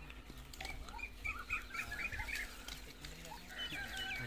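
Birds calling: a run of short, high chirping notes about a second to two and a half seconds in, with more calls near the end.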